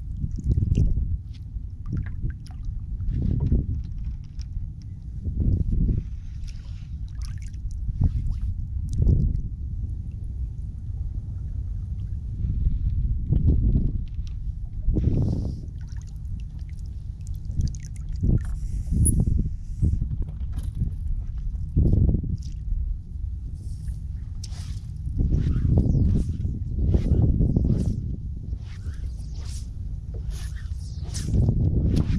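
A flats skiff being poled across shallow water: water gurgling and sloshing against the hull, with a knock or splash from the push pole every few seconds over a steady low rumble.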